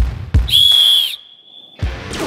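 A single sharp blast on a sports whistle, one steady high note lasting about half a second, signalling the start of a kick. It comes after two short knocks, and near the end there is a thud as a soccer ball is kicked on the gym floor.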